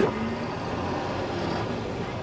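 Steady city street noise with the low, even hum of motor vehicle traffic.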